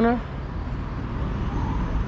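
Steady low rumble of road traffic on the nearby parkway, with the tail end of a man's word at the very start.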